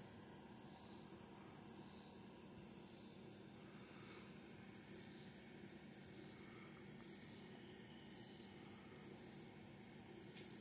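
Faint high-pitched insect chorus: a steady, unbroken trill with a second call pulsing about once a second.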